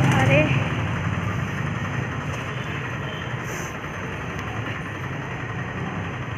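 A motor vehicle's engine hum fading away over the first couple of seconds, leaving a steady street din.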